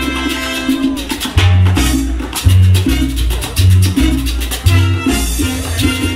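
A salsa orchestra playing live: a held chord in the first second, then a bouncing bass line under steady percussion.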